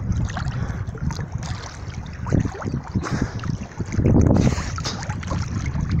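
Water sloshing and splashing right at a phone held at the surface by a swimmer stroking one-handed, with wind buffeting the microphone; a louder surge of splashing about four seconds in.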